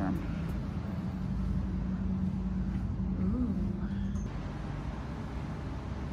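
A steady low mechanical hum with a low rumble underneath. It eases slightly after about four seconds.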